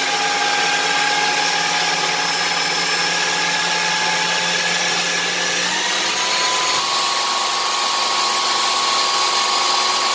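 Ninja Professional 1500-watt food processor motor running steadily while it grinds raw peanuts into peanut butter. Its whine edges up in pitch and steps higher twice, about six and seven seconds in.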